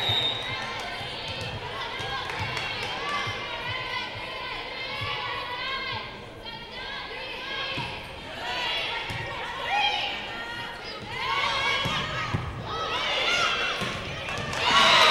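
Volleyball rally in an echoing gym: a serve, then the slaps of the ball being passed, set and hit, with a sharp hit about twelve seconds in, amid players' calls and shouting from the crowd.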